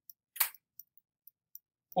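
A single short, sharp click about half a second in, followed by a few faint ticks; otherwise quiet.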